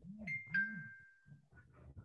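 Two-note ding-dong chime: a higher note, then a lower note that rings on for about a second.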